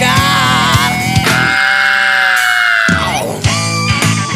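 Rock band music: a lead line over drums and bass. About a second and a half in, the bass and drums drop away under one long high held note with vibrato, which slides down near the three-second mark before the full band comes back in.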